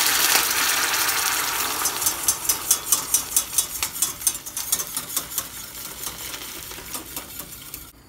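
Hot water poured from a metal jug into a small stainless saucepan of hot oil and tomato paste, sizzling as it goes in, while a wire whisk stirs. From about two seconds in, the whisk clicks against the sides of the pan about four times a second, then dies away toward the end.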